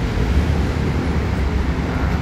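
A steady low rumble, like nearby road traffic, with no distinct events.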